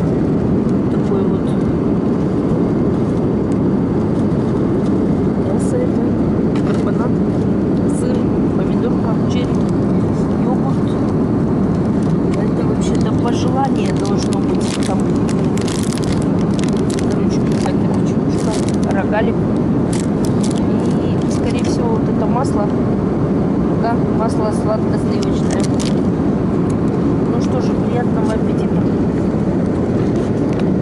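Steady, loud airliner cabin noise in flight, with crinkling of a plastic snack wrapper being handled in the middle stretch.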